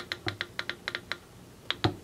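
Control panel of a VAVA electric kettle ticking rapidly, about seven short ticks a second, as the up button steps the set temperature up toward 100 °C; the ticks stop about a second in, followed near the end by two louder clicks of the button.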